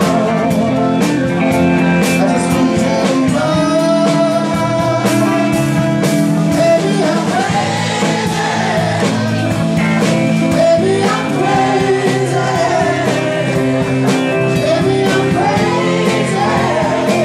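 Live band playing a soul/rock song, with electric guitars, bass and drums under a male lead vocal singing into a microphone.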